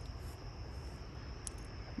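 Faint outdoor ambience: a steady high-pitched insect chorus over a low rumble, with one brief tick about one and a half seconds in.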